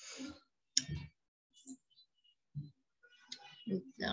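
A few faint, irregular clicks and short knocks picked up by an open microphone. A snatch of distant voice comes in near the end.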